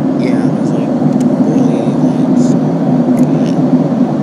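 Loud, steady low rush of cabin noise inside a passenger plane in flight, the engine and airflow noise heard from a seat.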